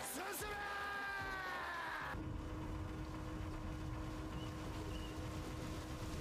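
Anime episode audio. A long, held shout slowly falls in pitch and cuts off abruptly about two seconds in. It gives way to a steady low underwater rumble with a constant droning tone as a ship is shown beneath the sea.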